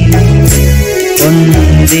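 Electronic keyboard playing the instrumental break between sung lines of a worship song, with sustained bass notes and chords over a rhythm beat.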